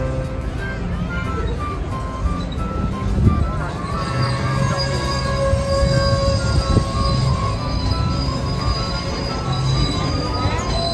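CPKC Holiday Train freight cars rolling slowly past, their steel wheels squealing on the rails in long, steady, high-pitched tones from about four seconds in, with a couple of low thumps. Music plays throughout.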